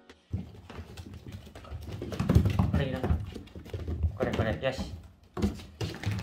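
A person's voice speaking briefly, over a run of light taps and clicks.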